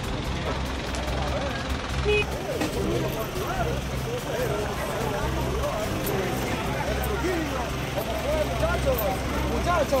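A vehicle engine idling with a steady low hum, under the scattered voices of several people talking.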